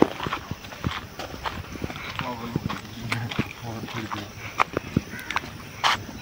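Irregular knocks and clicks from a phone being handled and carried over rough ground, with a louder knock near the end, and faint men's voices talking in the background.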